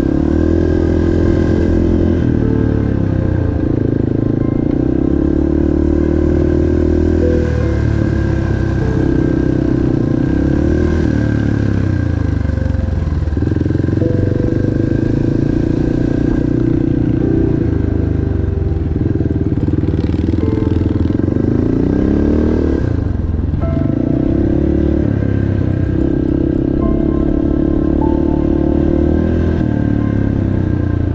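Dirt bike engines on the move: a single-cylinder four-stroke, from the rider's Yamaha TT-R230, rises and falls in pitch with throttle and gear changes, easing off briefly about halfway through and again a little later. A small Honda CRF125F runs ahead.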